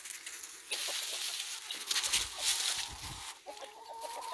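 Dry fallen leaves crunching and rustling underfoot for a couple of seconds, with chickens clucking. Near the end a fowl starts a steady, held call.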